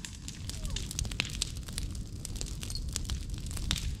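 Burning brush pile of dry branches crackling and popping irregularly over a steady low rumble.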